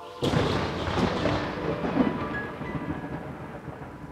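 A sudden loud rumbling crash about a quarter second in, with a few sharp crackles in its first second, dying away slowly over the next three seconds. Faint music continues under it.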